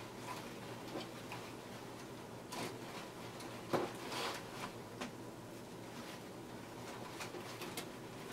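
Scattered rustling and light clicks of ribbon, grapevine and silk-flower stems being handled and tucked into a grapevine wreath, with one sharper click a little before the middle.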